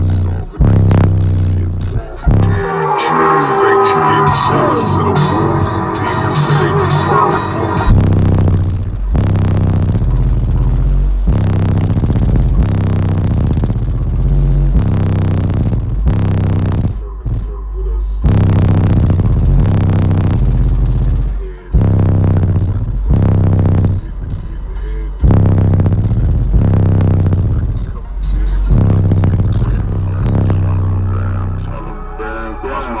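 Loud, bass-heavy rap music played through Skar Audio EVL car subwoofers, heard inside the car's cabin. The deep bass drops out for several seconds near the start, then returns with a few short breaks in the beat.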